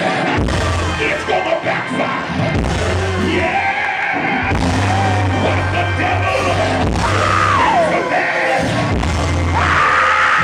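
Live church band music with a deep, steady bass line filling the hall, and long wordless shouts into a microphone over it: two loud rising-and-falling yells, about seven seconds in and again near the end.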